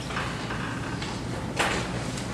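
Soft rustling and shuffling of a congregation getting to its feet for a scripture reading, with a small knock about a second and a half in.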